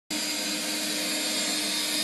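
Steady whir of a running household appliance motor: an even hiss with a steady low hum, unchanging throughout.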